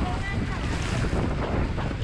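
Steady roar of Niagara Falls' falling water close by, with wind and spray buffeting the microphone.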